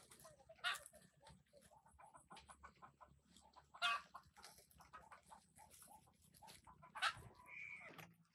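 Dry leaf thatch rustling and crackling faintly as it is handled on a roof. A few short clucking calls from chickens come through about a second in, midway and near the end.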